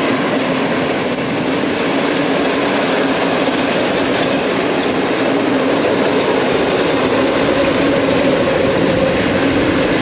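A long train of four-axle Uacs cement hopper wagons rolling past on the rails. The rolling noise is loud and steady, with a steady low tone running underneath.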